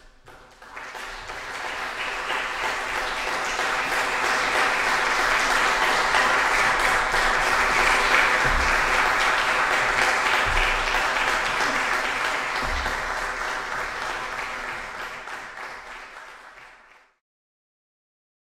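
Audience applauding, swelling over the first few seconds, holding steady, then thinning before it is cut off suddenly near the end.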